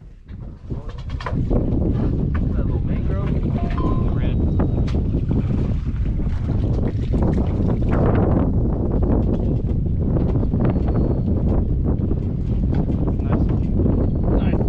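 Wind buffeting a microphone whose wind cover has come apart: a loud, steady low rumble that sets in about a second in and covers everything else.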